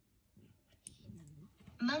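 Near silence, then a small mouth click a little before the middle and a faint hum of a girl's voice, and near the end she starts saying the word "Monkey".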